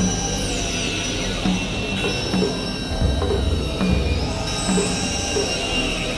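Experimental electronic synthesizer music from a Novation Supernova II and a Korg microKORG XL: steady high drones, a high tone gliding downward in the first second, short repeated blips, and low bass pulses about once a second.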